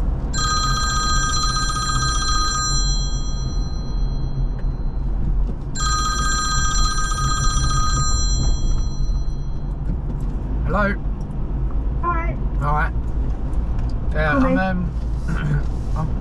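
A phone ringtone for an incoming call sounds twice, each ring lasting about two seconds, over the steady low road and engine noise inside the Ford Ranger's cabin. In the second half the call connects and short bits of voice come through.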